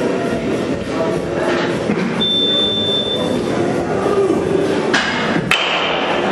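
Busy indoor training-facility hubbub with distant voices, a thin steady beep a couple of seconds in, and two sharp knocks in quick succession near the end.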